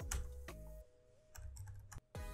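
Computer keyboard keys being typed: a handful of separate key clicks with a short pause near the middle, over faint steady background music.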